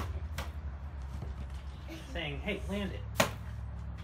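A mandrill slapping the glass window of its zoo enclosure: a faint knock just after the start and a sharp, louder one about three seconds in, over a steady low rumble.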